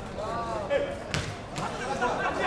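Football struck by a boot during a tackle: a sharp thud just past halfway, then a softer second knock, with players shouting just before.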